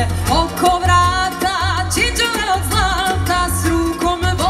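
Live band music with a singer: a wavering sung melody over a steady bass beat.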